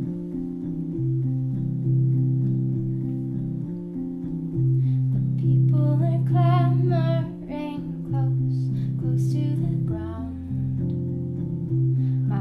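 A small band plays the slow intro of a song, led by electric-piano chords that change about every two seconds. A higher melody with vibrato comes in about halfway through.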